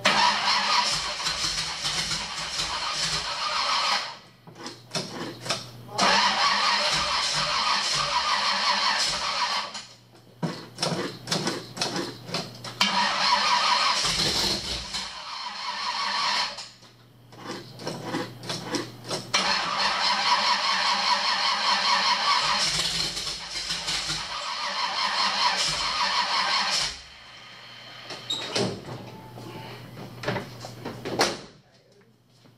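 Starter motor cranking the Suburban's V8, freshly fitted with a new camshaft, in several bursts of two to eight seconds with short pauses between, the engine not catching. A steady low hum runs under parts of it.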